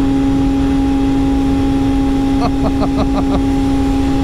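Arctic Cat Catalyst 600 two-stroke snowmobile engine running hard at a steady high speed, its pitch held level as the sled keeps pulling, with a low rush of wind and track noise beneath.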